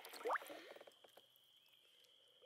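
Faint water sounds as a walleye is lowered into a lake and let go: small splashes and gurgling at the surface. About a quarter second in, a short rising note stands out as the loudest sound.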